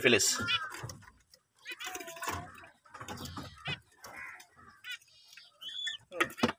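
Caged finches giving short, high chirps now and then, over faint indistinct talk.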